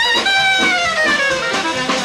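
Live traditional jazz trio: a soprano saxophone holds a high note, then plays a lower note that slides slowly downward, over piano and drums.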